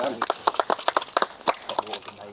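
A few people clapping by hand, a scattering of separate, uneven claps with no steady rhythm.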